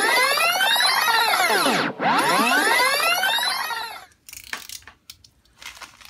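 Short electronic intro sting: two synthesizer sweeps, each rising and then falling in pitch over about two seconds. After them come a couple of seconds of scattered faint clicks.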